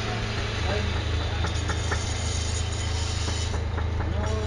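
A steady low hum over a constant background rush, with a few faint voices in the background.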